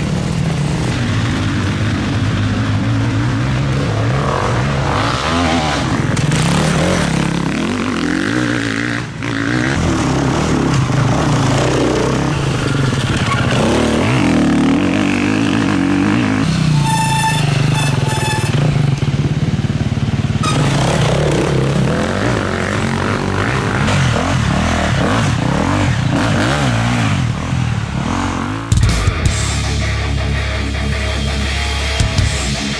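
Enduro dirt-bike engines revving and accelerating hard on a dusty trail, the pitch rising and falling as the bikes pass. About halfway through come two short high tones, and in the last second heavy-metal guitar music comes in.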